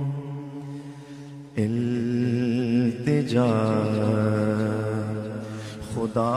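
A man singing a naat (Urdu devotional song), holding long wavering notes over a steady low drone. One note fades out, then a new phrase begins about one and a half seconds in and rises again about three seconds in.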